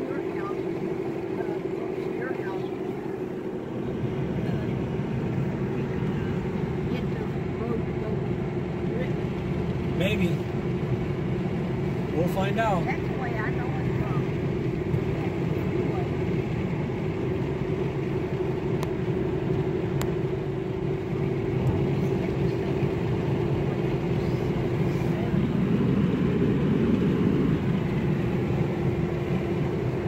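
Steady engine and tyre noise inside the cabin of a car at road speed, with a constant drone, getting louder about four seconds in.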